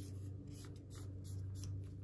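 Marker pen drawing a pattern line on white board, faint scratchy strokes.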